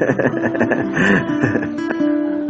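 Acoustic guitar playing, plucked and strummed notes ringing on steadily.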